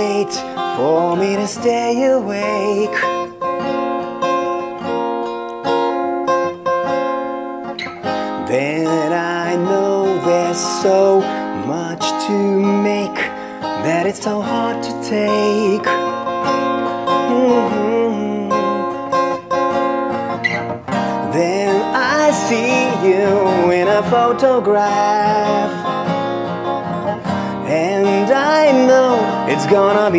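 Acoustic guitar played with a mix of strumming and picked chords, with a man's voice singing a melody over it in stretches.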